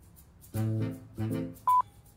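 A short electronic tune of a few steady low notes, heard twice, then a sharp high beep near the end.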